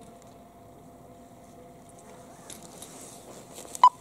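Ski edges carving and scraping on groomed snow, faint at first and growing louder through the second half as the giant-slalom skier comes closer, with a brief sharp sound just before the end.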